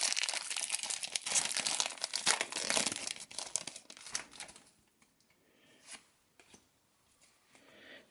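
Foil Pokémon booster pack wrapper being torn open and crinkled as the cards are slid out, a dense crackling that stops about four and a half seconds in.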